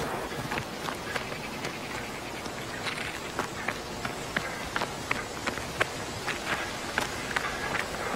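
Footsteps of a person running on sand and dirt ground: a quick, irregular series of light, sharp steps over a steady outdoor hiss.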